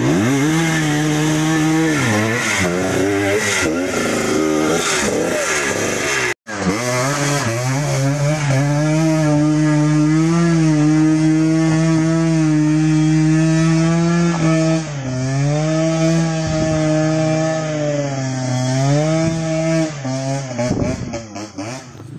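Dirt bike engine revving hard under load on a steep, muddy uphill climb, its pitch swinging up and down with the throttle. The sound breaks off for an instant about six seconds in, then carries on, and turns uneven near the end.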